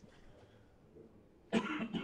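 A man coughs once, a short harsh burst about one and a half seconds in, after a quiet stretch of room tone.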